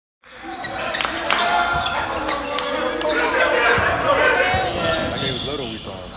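A basketball bouncing on a gym floor during play, with voices of players and spectators around it, all ringing in a large hall. The sound cuts in suddenly just after the start, out of silence.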